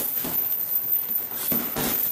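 Boxing gloves punching a leather heavy bag: a series of short thuds, two of them close together about one and a half seconds in, as a punch combination is thrown.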